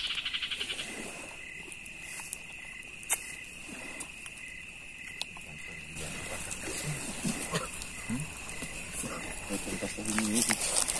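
Night insects keep up a steady high drone, with a second pulsing trill about twice a second. Right at the start a rapid burst of about a dozen chirping clicks comes from a small animal, and about three seconds in there is one sharp click. Quiet voices murmur in the second half.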